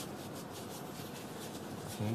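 Faint, steady rustle of plastic-gloved hands pressing and wrapping soft pastry dough, the oil dough being closed around the crispy dough.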